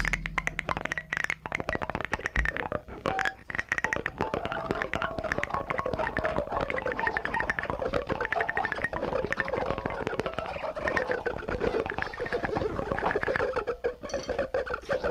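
Experimental noise music: dense, irregular crackling and scratching clicks over a faint, wavering mid-pitched tone.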